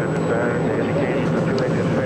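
Steady rumble of Space Shuttle Columbia's rocket engines during ascent, with indistinct voices over it.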